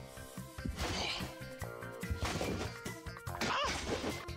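Background music over three sudden noisy hits about a second apart: a player bouncing on a trampoline and dunking a basketball.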